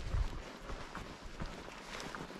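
Footsteps of a person walking on a dry dirt trail, a string of irregular short steps, with a low thump near the start.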